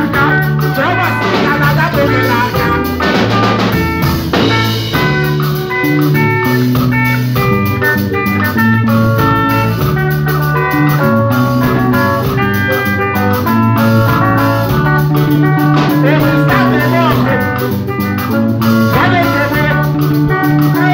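Live band music: electric guitar lines and a stepping bass line over a drum beat, loud and steady throughout.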